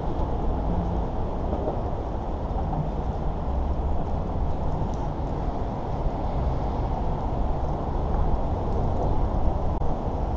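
Steady low rumble of freeway traffic.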